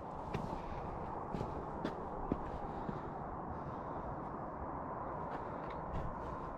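Steady low outdoor wind noise with a few faint taps of footsteps on bare rock.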